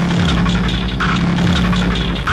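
Rhythmic noise electronic music: a heavy, steady low drone with a short burst of noise about a second in, part of a pulse that repeats roughly once a second.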